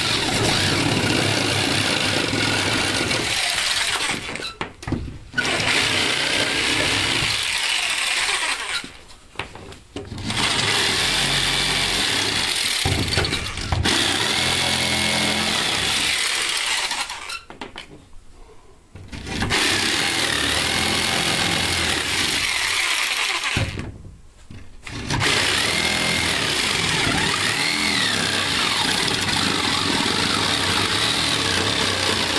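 Corded Black & Decker jigsaw cutting through OSB sheathing, its blade buzzing through the board. It runs in five long stretches, with four short stops between them.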